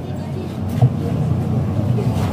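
Low, steady rumble of outdoor background noise with faint voices in it.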